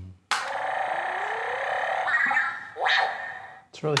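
R2-D2 electronic scream and whistle sound effects played through the small speaker of a Funko Pop Lights & Sounds R2-D2 figure, set off by pressing its head. One long warbling, electronic scream with a slowly rising whistle in it starts about a quarter second in and lasts about two seconds. A short rising squeal follows near the three-second mark.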